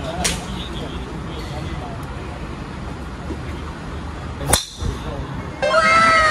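Golf driver striking a teed ball: one sharp crack about four and a half seconds in, with a fainter crack near the start, over a steady driving-range background murmur.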